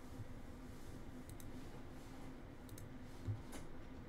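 Faint computer mouse clicks, a few in quick pairs spread over the middle and end, with a brief dull low thump shortly before the end.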